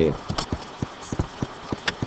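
A run of light, irregularly spaced clicks, about six in a second and a half, from a computer mouse being clicked while the highlighter tool is picked in the drawing software.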